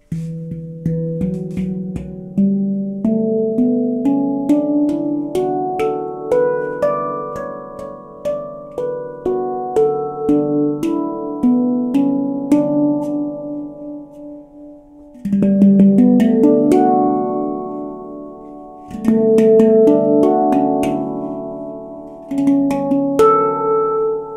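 Avalon Instruments steel handpan in D Ashakiran scale played with the fingertips: single notes struck one after another and left ringing, climbing upward over the first few seconds. The playing thins and quietens, then a deep low note is struck about two thirds of the way through, followed by denser clusters of strikes.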